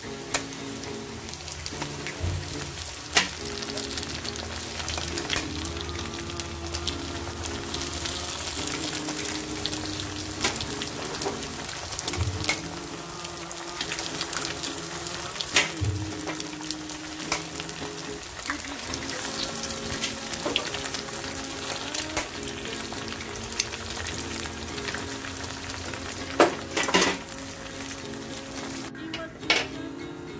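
Spring onion, shallots and eggs sizzling in hot oil in an iron wok, a steady frying sound as the eggs are broken in and set. Sharp clicks and pops come through it every few seconds.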